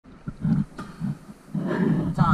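Muffled underwater sounds of a scuba diver breathing through his regulator: uneven low rumbling bursts of exhaled bubbles, heavier in the last half second.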